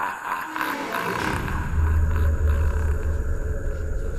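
Dark hardstyle track intro: a deep low rumble swells in about a second in and holds, while a busier higher-pitched texture fades away.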